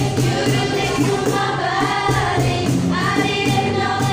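Two girls singing a song together into microphones, accompanied by two strummed acoustic guitars, in a live amateur acoustic band performance.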